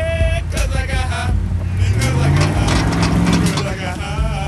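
1997 Ford Expedition's V8 engine revving up under load about two seconds in, the pitch rising, as the tyres spin and throw dirt climbing a bank. A singing voice is heard in the first second.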